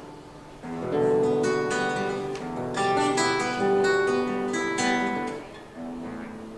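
Classical-style acoustic guitar played solo: a fading note, then, from about a second in, strummed chords and plucked notes ringing out in a loose run, easing off near the end.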